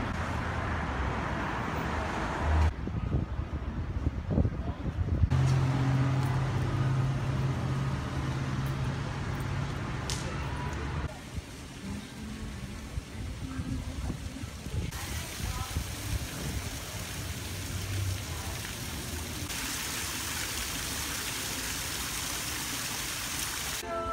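City street ambience: car traffic and indistinct voices, with the background noise changing abruptly several times.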